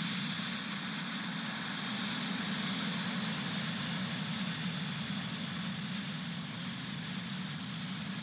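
A Falcon 9 rocket's nine Merlin 1D engines at liftoff: a steady, continuous rumble of rocket exhaust with no breaks, easing only slightly near the end.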